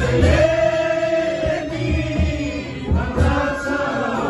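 A group singing a Christian worship song, led by a man's voice, with a guitar and a steady low beat underneath.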